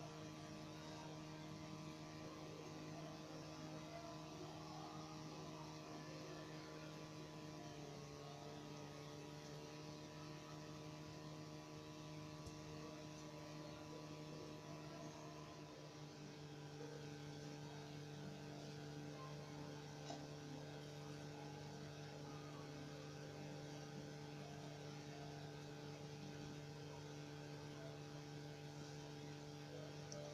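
Faint, steady low hum with a stack of overtones, shifting slightly in pitch about eight seconds in.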